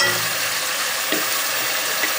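Onion-and-tomato masala sizzling steadily in hot oil in a nonstick pot.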